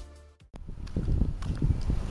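Music fading out over the first half second, then irregular footsteps on an asphalt road picked up by a handheld camera.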